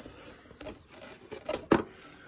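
Light handling noise from the plastic air filter housing lid being held and moved: a few soft clicks and scrapes, with one sharper knock about three-quarters of the way through.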